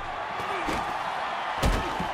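Boxing-match crowd shouting and cheering, with one heavy punch impact landing about one and a half seconds in.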